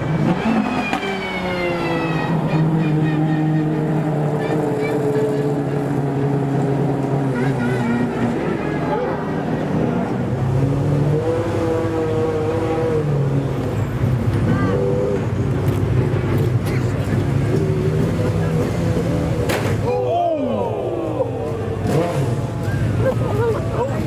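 Pagani Zonda R's 6.0-litre AMG V12 running at low speed. Its note falls as it slows at the start, then holds a steady low note with a few short revs, with people talking over it.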